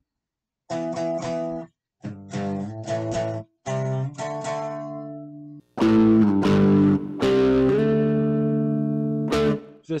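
Electric guitar playing a riff of power chords: three short chord phrases with brief gaps, then from about six seconds in louder, longer ringing chords struck a few times before the sound stops just before the end.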